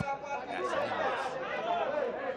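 Speech only: ringside commentators talking over the background chatter of the fight crowd.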